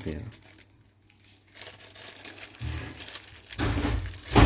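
Small clicks and rustling as an embroidery foot is fitted by hand onto the presser bar of a portable computer embroidery machine, ending in a louder dull low thump near the end.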